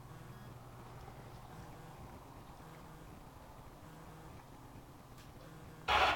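Quiet room tone with a low steady hum. A short, loud burst of sound comes just before the end.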